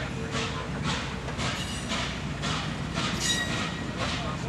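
Norfolk & Western 611 steam locomotive moving slowly with a string of passenger coaches, beating out regular hissing exhaust chuffs about twice a second. Brief high wheel squeal comes twice, about halfway through and again near the end.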